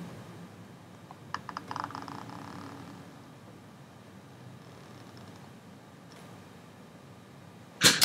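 Quiet room tone, with a brief faint cluster of clicks about a second and a half in.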